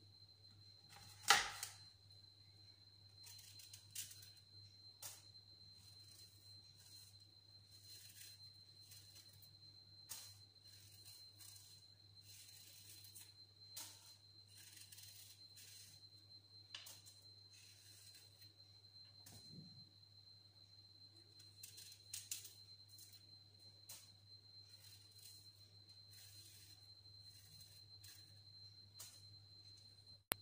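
Kitchen knife cutting and peeling apples over a plastic cutting board: soft scraping of the blade through the fruit and peel, with scattered light taps of the knife on the board, the sharpest a knock about a second in. A faint steady high whine and low hum run underneath.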